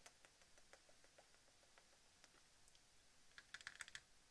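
Faint computer keyboard clicks, a few scattered keystrokes and then a quick run of typing near the end, over near silence.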